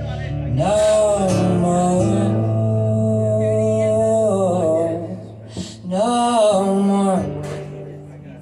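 A man singing two long, drawn-out vocal phrases with a short break between them, over a live acoustic guitar.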